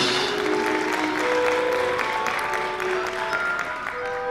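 Audience applauding in a theatre, dense clapping, with a few soft held notes from the orchestra sounding beneath it.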